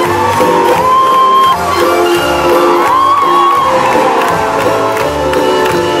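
Upbeat song playing over the arena sound system, with held, gliding melody notes over a beat, and the audience cheering and whooping over it.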